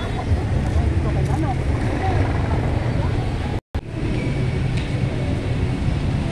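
Busy street noise: a steady low traffic rumble with passers-by's voices over it. The sound cuts out for a split second a little past halfway.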